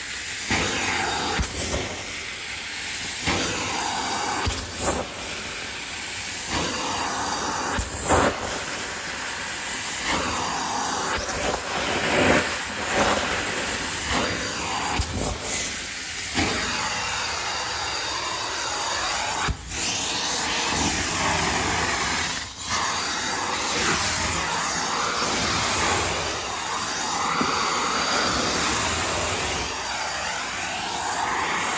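Carpet extraction stair tool pulling air and water through stair carpet: a steady loud hiss of suction that swells and fades as the wand is pushed and drawn across the treads, with two brief drops in the sound around the middle.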